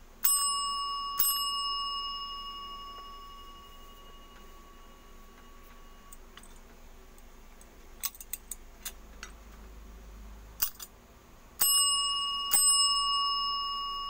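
Chrome desk service bell struck twice, about a second apart, each strike ringing on in a clear tone that slowly fades. A few short light clicks follow in the middle, then the bell is struck twice more near the end and rings on.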